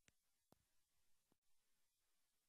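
Near silence: the soundtrack has dropped out.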